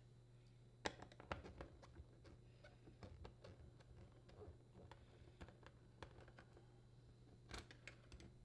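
Near silence broken by faint, scattered clicks and ticks of a nut driver working small screws out of the metal dispenser retaining bracket on a dishwasher door, over a low steady hum.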